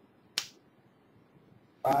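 A single sharp click about half a second in: a felt-tip marker tapping down against a steel rule on a fiberglass-covered bench as it ticks off a measurement mark.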